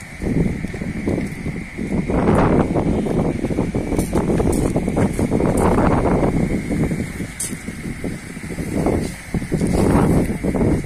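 Wind buffeting the microphone: a loud, gusty low rumble that starts suddenly and swells and fades unevenly, with a few faint clicks in between.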